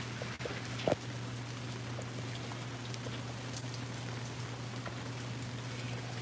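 Steady rain falling on a wet patio and potted plants, with a short brief sound about a second in.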